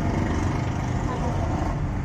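Steady engine and road noise of a moving vehicle, heard from on board, with faint voices underneath.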